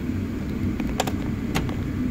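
Two light clicks of metal tools being handled in a toolbox drawer, about half a second apart, over a steady low rumble.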